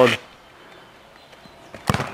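A football being struck: one sharp thump near the end, over a low outdoor background.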